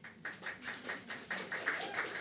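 Audience applauding: the clapping starts suddenly and grows denser and louder.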